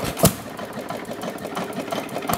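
A 1½ hp Gade air-cooled hit-and-miss engine running. It fires once, sharply, about a quarter second in, then coasts on its flywheels with a fast, light mechanical clatter.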